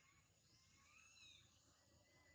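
Near silence, with faint high-pitched animal calls; one short call about a second in rises and falls in pitch.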